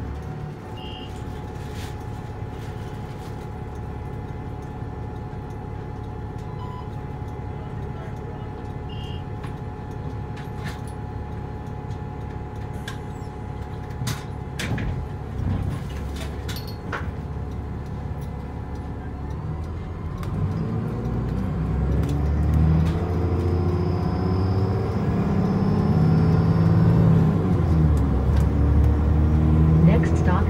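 City bus engine idling with a steady hum, heard from inside the bus, with a few sharp clicks partway through. About two-thirds of the way in, the engine revs up as the bus pulls away and gathers speed: its pitch rises several times over and it grows louder.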